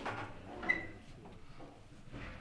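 Rubber gloves being pulled on and adjusted: a soft rustle, then a sharp sound with a brief squeak under a second in.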